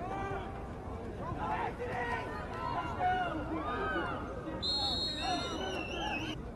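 Many voices from players, sidelines and spectators shouting over each other during a football play. Near the end a high, steady whistle sounds for about a second and a half, the referee's whistle blowing the play dead.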